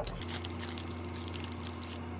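A steady low electrical hum with a faint crackle above it.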